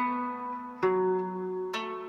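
Sakhalin Ainu tonkori, its open strings plucked by hand: three plucks, each note ringing on under the next.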